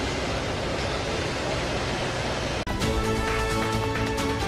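Steady rushing noise of a fire hose jet spraying from an aerial ladder platform. It is cut off abruptly about two and a half seconds in by a news-channel music sting with held synth tones.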